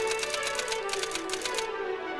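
Typewriter-style clicking sound effect: a quick, even run of key clicks, one for each caption character typed onto the screen, stopping about one and a half seconds in. Orchestral background music plays underneath.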